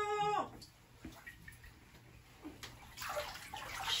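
Bathwater sloshing and splashing as a person rises from a full bathtub in a soaked dress. It begins faintly and builds from about three seconds in.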